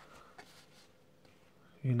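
Faint handling of a cardboard booklet in a quiet small room, with one small tap about half a second in. A man's voice starts near the end.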